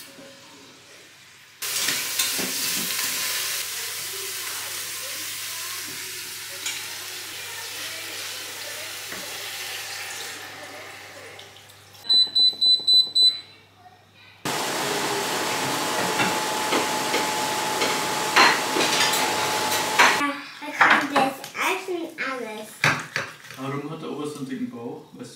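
Instant Pot Duo control panel beeping: a quick run of about seven high beeps as its buttons are pressed to set the pressure-cooking time. A steady hiss comes before and after the beeps, each starting and stopping abruptly, and short knocks and voices follow near the end.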